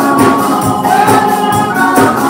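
Congregation singing a gospel hymn together, with electric keyboard accompaniment and a tambourine shaken in a steady beat.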